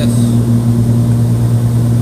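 A Cessna 340's twin piston engines and propellers droning steadily in flight, heard inside the cabin as a loud, even low hum.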